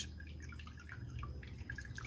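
Quiet background in a pause: a low steady hum with a few faint, scattered ticks.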